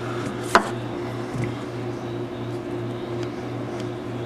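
Paracord and a metal fid being worked by hand through a Turk's head knot: one sharp click about half a second in and a few faint ticks, over a steady low hum.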